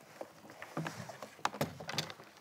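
Rummaging inside a leather suitcase: irregular knocks, clicks and rustling as things inside are handled, with a couple of sharp clicks about a second and a half in.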